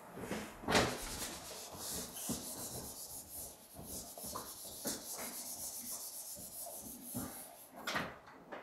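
A whiteboard eraser scrubbed back and forth across a whiteboard, a dry rubbing in repeated strokes.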